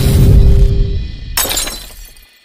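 Glass-shattering sound effect, a sharp crash about one and a half seconds in, over the tail of a rock-style intro jingle that fades out.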